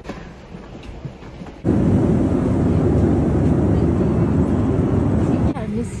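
Faint quiet background, then a loud, steady rumbling roar that starts suddenly about a second and a half in and cuts off just as suddenly about half a second before the end.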